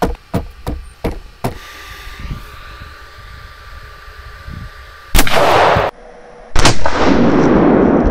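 Antique triple-barrelled percussion-cap pistol being fired: a few light clicks of handling at first, then two loud reports about a second and a half apart, the second one deeper and longer, still trailing off at the end.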